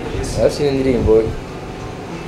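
Brief murmured speech in the first second, then a steady hum of room noise.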